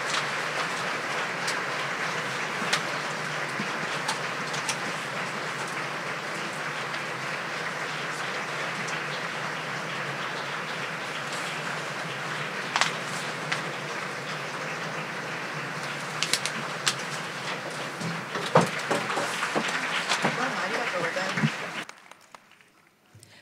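Audience applause, a steady patter of many hands clapping that stops abruptly near the end.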